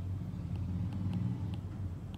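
A steady low hum of background noise, with a few faint light ticks from a stylus writing on a tablet.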